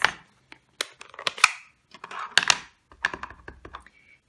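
Plastic ink pad cases and clear acrylic stamp blocks being picked up, opened and set down: several sharp clacks and taps with brief scrapes, then a run of small taps near the end.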